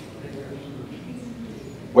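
Faint, indistinct murmur of voices.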